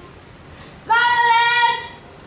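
A schoolgirl's voice calling the name "Violet" in a drawn-out, sing-song note held at one steady pitch for about a second, starting about a second in.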